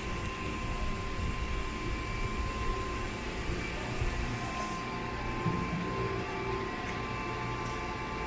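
Steady hum of a powered-up CNC vertical machining center standing idle, with a thin steady whine over a low rumble. A few faint clicks come in the second half, as keys on its control panel are pressed.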